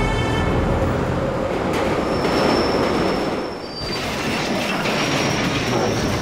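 Train sound effect: a train running on the rails with a steady rumble, joined about two seconds in by a high, steady wheel squeal that breaks off briefly just past the middle and then resumes.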